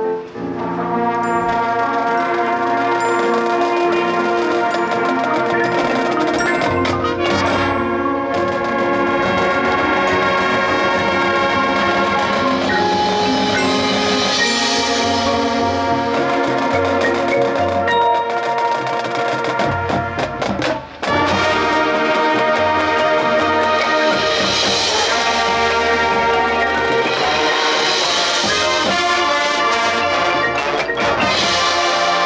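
High school marching band playing: sustained brass chords over front-ensemble marimbas and percussion, with a brief break about two-thirds of the way through before the full band comes back in.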